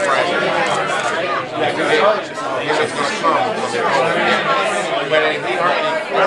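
Only speech: close conversation between men, over the overlapping chatter of a crowded room.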